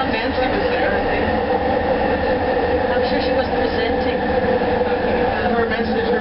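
A Bombardier Mark II SkyTrain car running on its elevated guideway, heard from inside the car: a steady rumble of wheels on rail with a constant hum from the drive.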